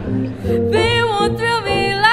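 Small jazz combo playing: upright bass and piano under a woman's singing voice, with electric archtop guitar. The voice comes in just under a second in, gliding between long held notes.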